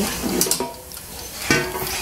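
Kyowa air fryer basket being handled mid-cook, with a hard plastic clunk about a second and a half in and a lighter click before it, over a faint steady hum.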